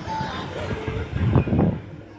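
Fairground thrill ride in motion, its swinging arm and gondola giving a low rushing rumble that swells about a second and a half in, then drops away near the end.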